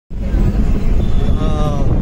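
Steady low rumble of a moving bus heard from inside among the passengers, with a voice speaking briefly near the end.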